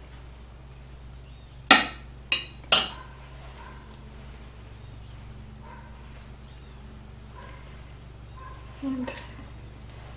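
Three sharp clinks of glassware about two seconds in, as cornbread squares are lifted out of a glass baking dish and placed in a glass trifle bowl. A dog barks faintly outdoors in the background.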